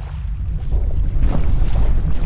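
A low rushing rumble that builds in loudness over the first second and then holds steady, with a few faint crackles in it.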